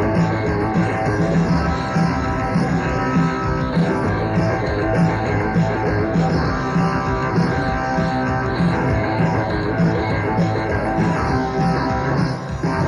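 Live rock band playing: guitar and bass over a steady pulsing beat.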